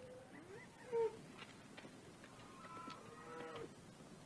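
Faint cattle lowing in the background, a few scattered calls. A short one about a second in is the loudest, and a longer, wavering call comes near the end.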